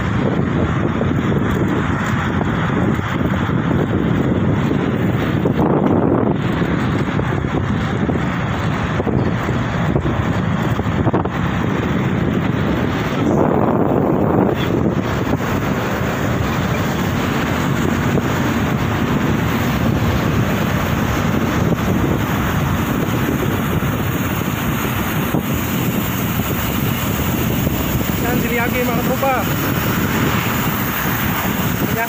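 Steady rushing wind buffeting the microphone of a camera carried on a moving bicycle.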